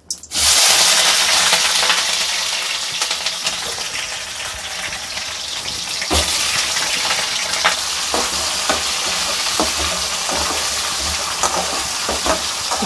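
Raw banana slices dropped into hot oil in an aluminium kadai, sizzling suddenly from about half a second in and then frying steadily, with a few light knocks as more slices go in and are moved about.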